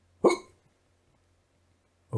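A man's single brief vocal sound, a short sudden exclamation or catch of breath lasting about a quarter of a second, a moment after the start.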